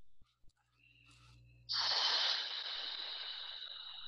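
A sudden breathy hiss of air that starts just before two seconds in and slowly fades.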